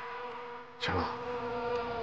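A steady buzzing hum, with a sudden louder noise starting just under a second in.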